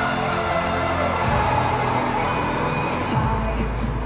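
Live pop music played over a stadium sound system and recorded on a handheld phone in the stands. A deep bass note comes in about three seconds in.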